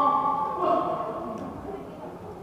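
A man's voice, amplified through a handheld microphone, speaking or reciting.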